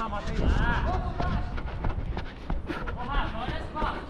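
Players shouting to each other across a small football pitch, with short steps on artificial turf.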